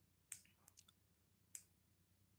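Near silence with two faint sharp clicks about a second and a quarter apart, and a few fainter ticks between them.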